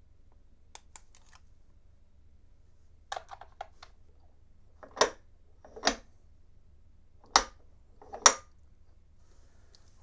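Brass cartridge cases and reloading gear handled on a bench: a few faint ticks, then four sharp separate clicks and clacks spaced about a second apart.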